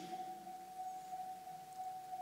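A faint, steady single-pitched tone held without change, over quiet room tone.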